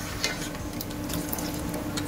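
Metal ladle stirring rice porridge in a pressure cooker, with small scattered clinks and scrapes of the ladle against the pot and light liquid sloshing. A steady faint hum runs underneath.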